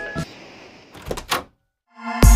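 Background music breaks off, then a couple of dull thumps a little over a second in, then the sound drops to dead silence for about half a second at a cut between two clips.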